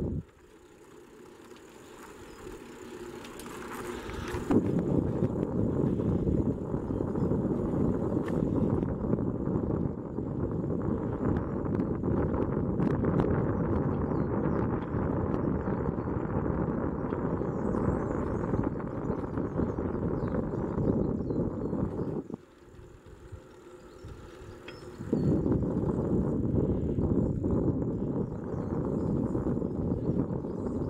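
Steady low rumble of wind on the microphone and tyres rolling on an asphalt path while riding a bicycle. It drops away sharply at the start and builds back over a few seconds, then fades out again for a few seconds later on before returning.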